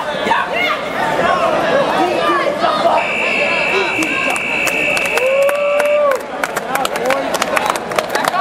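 Match timer buzzer sounding one steady high tone for about three seconds over crowd chatter, marking the end of time in the overtime round. Clapping starts as the buzzer stops.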